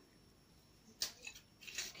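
Apple cider vinegar bottle being handled and poured over a salad: mostly quiet, with one sharp click about a second in and a brief soft hiss near the end.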